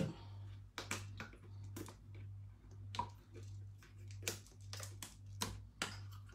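Scattered light clicks and taps, about one or two a second, from kitchen utensils and containers being handled while dough ingredients are measured and added, over a low steady hum.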